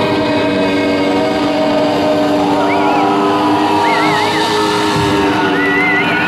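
Live rock band holding a long sustained chord in a concert hall, several steady notes ringing together as the song draws to its close. From about halfway in, high wavering whistles from the crowd come in over it.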